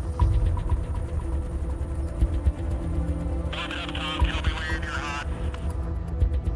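Background music with a low, steady drone over a deep rumble. About three and a half seconds in, a wavering higher-pitched sound comes in for over a second.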